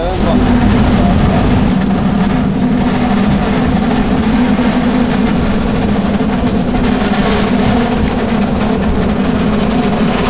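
San Francisco cable car running on its rails, heard on board: a steady low hum with rattling and rumble.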